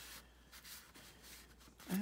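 Faint rustling and light rubbing of thin paper strips being handled and slid across a paper trimmer.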